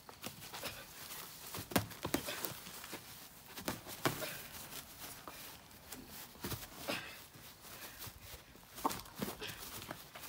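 Irregular smacks of boxing gloves landing as two boys spar, a dozen or so knocks spread unevenly, a few of them sharper than the rest.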